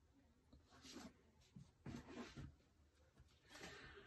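Near silence, with a few faint soft knocks and rustles of hardback books being handled on a wooden desk.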